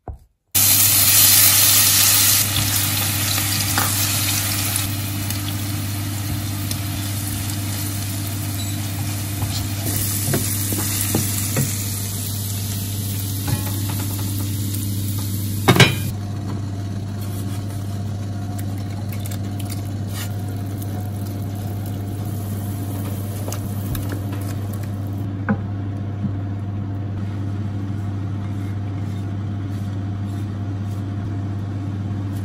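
Spice paste sizzling as it fries in oil in a pan, over a steady low hum. There is a sharp knock about sixteen seconds in, after which the sizzle is fainter.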